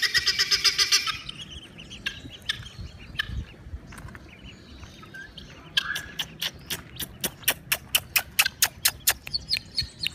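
Helmeted guineafowl giving harsh, clicking calls: a rapid chatter in the first second, then from about six seconds in a run of sharp repeated calls, about five a second, that stops shortly before the end.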